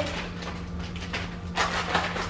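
Cooking-spray oil sizzling and crackling in a hot frying pan, bubbling as the pan heats, the sign the pan is hot enough for the eggs. The crackling gets a little louder near the end.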